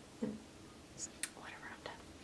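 A woman whispering faintly to herself, a few soft broken syllables with hissy 's' sounds.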